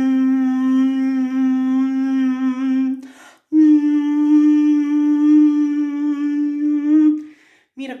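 A man's voice humming a closed-mouth 'mm' in the chewed-hum vocal exercise, the jaw moving as if chewing while the tone stays soft and continuous. Two long held notes, the second a little higher, with a short break between them about three seconds in.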